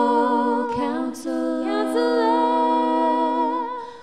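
A women's vocal group singing long held notes in harmony, moving to a new chord about a second in and fading out near the end.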